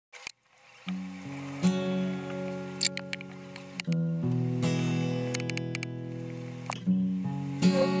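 Background music: sustained chords that change every one to three seconds, with a few short clicks among them.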